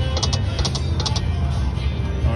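Konami Tiki Heat slot machine spinning its reels: a quick run of short, high electronic ticks as the reels land, over a steady low hum.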